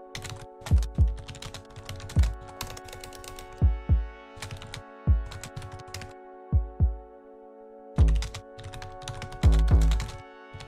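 Live-coded electronic music from a monome norns: synthesized kick drums that fall in pitch, sounding in an uneven euclidean pattern over a steady sustained drone, along with computer keyboard typing as the code is edited. A tight cluster of kicks lands near the end.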